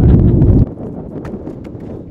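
Wind buffeting the camera microphone with a loud low rumble that cuts off abruptly about a third of the way in. A quieter stretch of light clicks and rustling follows.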